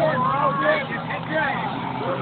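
Car engines on the race track, a steady low drone, under spectators' shouting voices that fade out after about a second and a half.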